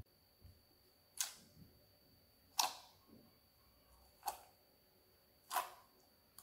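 Clear slime being pressed and squeezed by hand in a glass bowl, giving four short, sharp pops about a second and a half apart.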